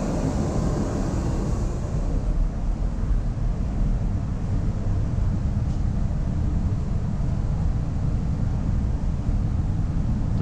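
Steady low drone of shipboard ventilation and machinery, with the CO2 room's exhaust fan running. A higher airy hiss fades out over the first two seconds.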